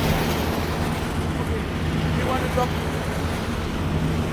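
Asphalt paver's diesel engine running with a steady low drone while it lays the road surface, with a faint snatch of distant voices about two and a half seconds in.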